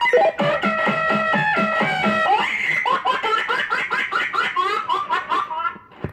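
Incoming call sound number 1 (llamador de entrada) from a CB radio calling box, played through an RCI 69FFB4 radio: a short recorded jingle of pitched, gliding tones with many quick notes, cutting off abruptly just before the end.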